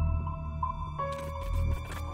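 Ambient background music: sustained tones over a low drone, with a few brief hissing swishes in the second half.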